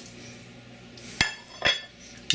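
A ceramic dinner plate clinks sharply as it is set down about a second in, with a ringing high overtone, followed by a second, softer knock.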